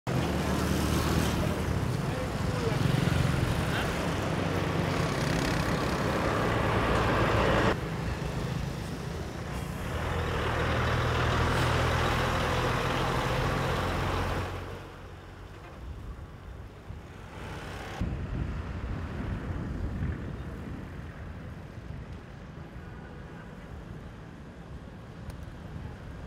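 Street traffic, with the engines of a heavy lorry, cars and motorcycles passing close. It is loud for the first half of the clip, with the lorry's low engine hum. After about fifteen seconds it turns to quieter, more distant traffic.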